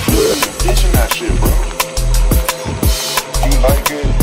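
Neurofunk drum and bass music: a fast, regular drum pattern over heavy deep bass.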